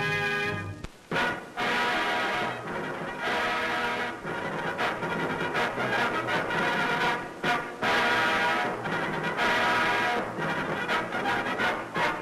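Military brass fanfare on fanfare trumpets, played as held notes in short phrases with brief breaks between them. It starts about a second in, just after other music breaks off abruptly.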